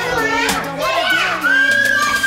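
Toddlers' voices, babbling and squealing, over background music with a steady bass line; a long high held note or squeal starts near the end.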